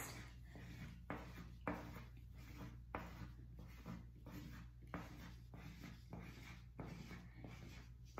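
Crayon drawing quick circles on paper held on a clipboard: a faint rubbing scratch that repeats roughly every half second, one stroke per circle.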